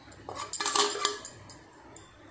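A steel spoon scraping and clinking against a steel plate as spice powder is pushed off it into the pot: a quick run of metal clinks and scrapes in the first second or so, then quiet.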